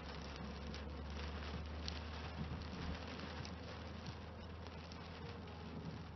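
Steady low drone of a car driving on a wet road, heard from inside the cabin through a dashcam microphone, with faint patter of rain on the windscreen.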